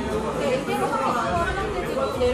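Indistinct voices talking and chattering, with no clear words.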